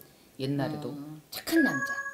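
A short spoken phrase from a woman, then about one and a half seconds in a bright bell-like chime sound effect rings with a steady held tone over the start of the next words.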